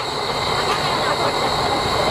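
Steady hiss and low rumble from a standing C57 steam locomotive in steam, with crowd voices mixed in.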